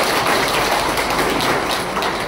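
Audience applauding: dense, steady clapping from a roomful of people.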